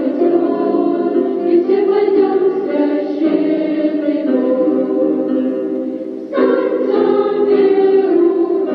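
Choir singing with held, sustained notes; one phrase fades about six seconds in and a new phrase begins at once.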